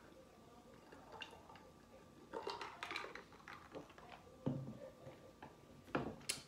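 Drinking from a stemmed glass of iced michelada: faint sips and swallows with small clinks of ice against the glass, and a louder knock a little after the middle as the glass is set down on the table.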